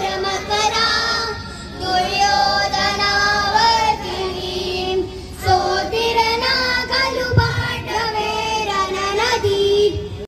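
A group of children singing a song together in unison into microphones, in phrases of long held notes.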